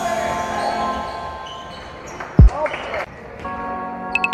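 A basketball bouncing once on a hardwood gym floor about halfway through, a single sharp thump, with the echo of a large sports hall. A music track fades out at the start.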